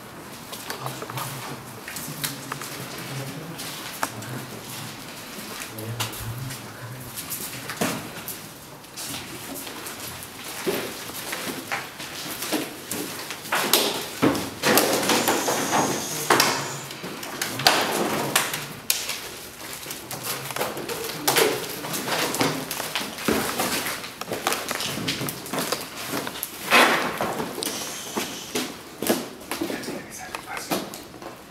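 Irregular knocks, scrapes and rustling of people moving through a rubble-strewn room, with louder bursts of indistinct voices about halfway through and again near the end.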